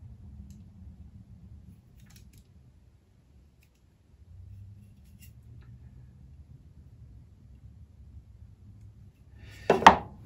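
Faint metallic clicks of a caliper's jaws being fitted into the saw kerf of a small wooden block, over low steady room hum. Near the end comes one sharp knock as the wooden block is set down on the table.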